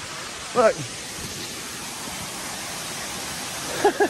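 Steady rushing of a tall waterfall, over 400 feet high, an even hiss of falling water without breaks.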